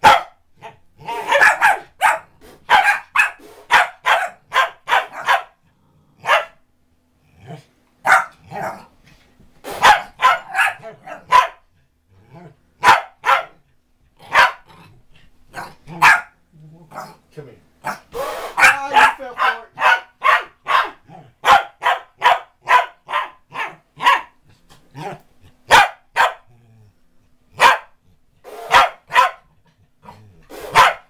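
A corgi barking over and over: sharp, short barks in quick runs of several, with brief pauses between runs. A person laughs briefly about nine seconds in.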